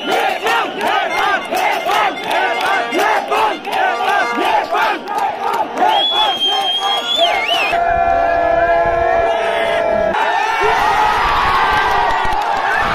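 A large stadium crowd of cricket fans chanting in unison, about three beats a second, with a long high note held over it partway through. Near the end the chant gives way to a general crowd roar.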